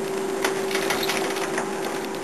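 A steady hum with a sharp click about half a second in, followed by a few lighter clicks and rustles.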